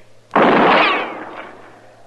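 A single gunshot sound effect about a third of a second in: a sharp, loud crack that dies away over about a second.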